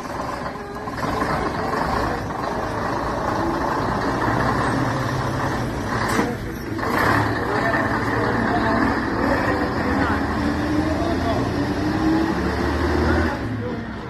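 Leyland OPD2/1 double-decker bus's six-cylinder diesel engine pulling away and driving past, its note rising as it gathers speed. There is a short sharp hiss about six seconds in, and the sound drops away near the end as the bus leaves.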